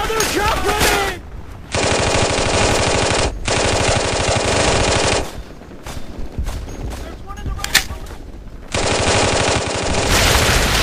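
Machine-gun fire as a battle sound effect: long, rapid bursts, with a short break in the middle where scattered single shots go off, one sharp crack standing out. The fast bursts start again near the end.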